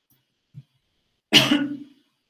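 A man coughs once, a single sharp cough about a second and a half in, with a brief faint low throat sound just before it.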